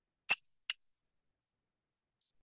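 Two short clinks of a ceramic mug being handled, about half a second apart, the first louder.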